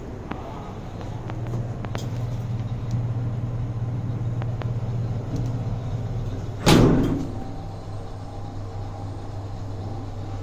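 Inside a Semag passenger lift car: a steady low hum, light clicks, and one loud thud about seven seconds in as the sliding doors shut. The hum carries on after the thud.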